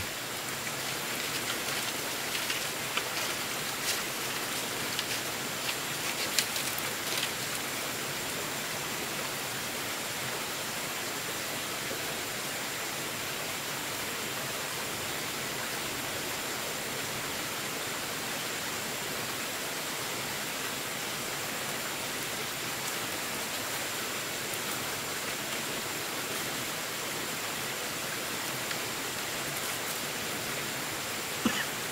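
Steady, even hiss of water, with a few light taps and clicks in the first several seconds.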